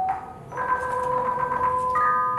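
Khong wong yai, the Thai circle of tuned bossed gongs, struck with mallets. A couple of notes are struck about half a second in and ring on for over a second, and new notes are struck near the end.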